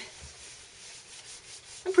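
Household iron sliding over scrap paper laid on a cotton muslin bag, a faint rubbing: heat-setting the spray ink on the fabric. Speech starts right at the end.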